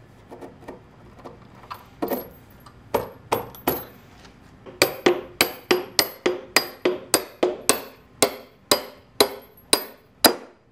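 Claw hammer striking the head of a bolt to drive it through a thick wooden beam: a few scattered blows at first, then steady blows about three a second from about five seconds in, each with a metallic ring.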